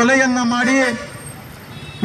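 A man speaking Kannada into a handheld microphone for about the first second, then a pause filled with a steady haze of street traffic noise.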